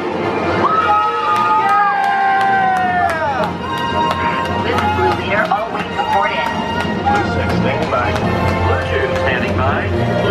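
Music and effects from the Hyperspace Mountain roller coaster's onboard soundtrack, with riders' shouts, over a steady low rumble. A cluster of long held tones slides down in pitch about three seconds in, followed by many short rising and falling cries.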